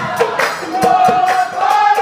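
Assamese Nagara Naam devotional music: voices sing a sustained, gently wavering melody over regular percussion strikes, two or three a second.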